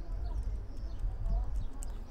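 A few clicks of a computer keyboard being typed on, over a steady low electrical hum.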